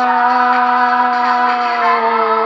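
One long note held at a single steady pitch within a French pop song, with no words, lasting through the whole stretch without wavering.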